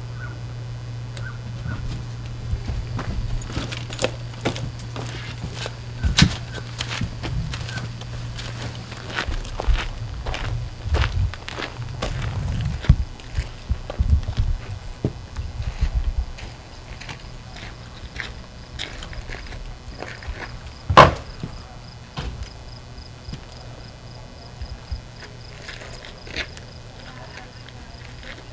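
Footsteps and scattered knocks and clunks of people moving through a trailer and walking outside, over a steady low hum that stops about halfway through. A single loud thump comes a few seconds after the hum stops.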